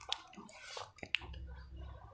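A small sharp click about a second in as the power button on an Evercoss DVB-T2 set-top box is pressed, with a fainter click and soft handling noise around it. A faint low hum sits underneath.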